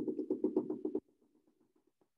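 Rapid pen taps on an interactive whiteboard, about ten a second, as a dashed line is drawn stroke by stroke; the tapping drops away sharply about a second in, with fainter taps after.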